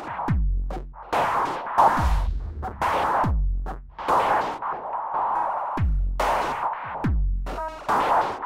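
Electronic drum pattern from the Microtonic drum synth, run through an Elektron Analog Heat with EchoBoy delay. Deep kicks with a falling pitch alternate with noisy hits. Between them run crunched-up, saturated delay echoes that duck each time the kick hits.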